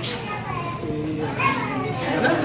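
Several voices talking over one another, children's voices among them.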